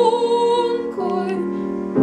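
Classical female voice, a soprano, singing with piano accompaniment. Her wavering held note ends about halfway through, leaving the piano sounding alone until she comes back in at the end.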